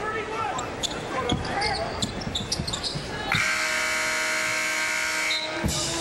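Basketball being dribbled on a hardwood court over arena crowd noise. About three seconds in, the arena's end-of-period horn sounds as one steady, loud tone for about two seconds, marking the end of the first half.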